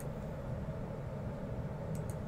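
Steady low hum of room noise, with a faint computer-mouse click at the start and another near the end.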